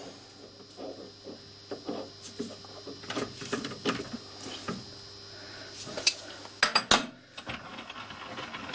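Light metal-on-metal clinks and taps as a fly cutter is fitted into a three-jaw lathe chuck and the jaws are tightened with a chuck key, with a few sharper clicks near the end.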